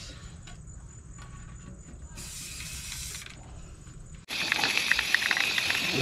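Aerosol spray-paint can spraying a wooden board: a hiss of about a second, then a much louder, continuous spray hiss that starts suddenly near the end.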